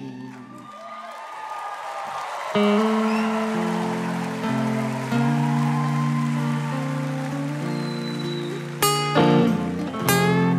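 Electric guitars start ringing, sustained chords about two and a half seconds in, over a haze of applause that fades. Two sharp strummed chords come near the end.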